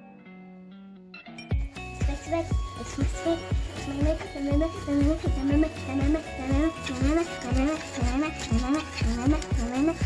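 Background music: soft held tones at first, then from about a second and a half in a steady drum beat with a short melodic figure repeating over it.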